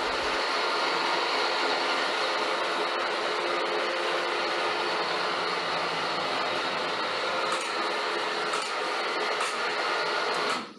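A steady mechanical whir, unchanging in pitch and loudness, that stops near the end.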